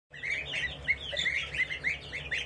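A flock of goslings and young chicks peeping: a continuous chorus of short, high chirps overlapping several times a second.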